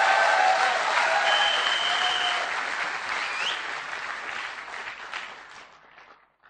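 Audience applauding, dying away gradually over several seconds.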